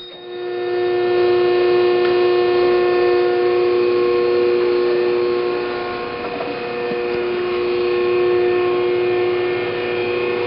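The hydraulic power unit of a 35-ton Metal Muncher II ironworker running, its electric motor and pump giving a steady, even whine that swells up over the first second.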